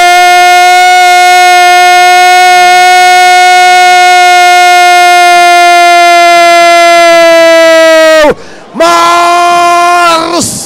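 Football commentator's drawn-out goal cry, 'Gooool', shouted as one steady, very loud note for about eight seconds. The note falls away, there is a quick breath, and a second held note follows.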